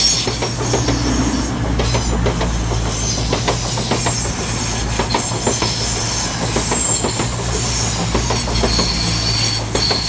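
Class 220 Voyager diesel-electric multiple unit passing close by: a steady low diesel drone, with many sharp clicks of wheels over rail joints and a high-pitched wheel squeal.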